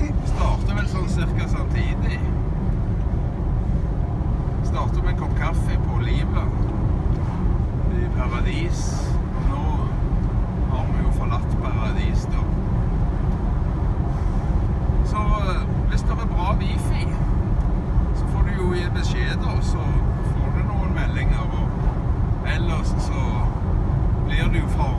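Road noise inside a moving vehicle's cabin at highway speed: a steady low rumble of engine and tyres, with indistinct voices over it.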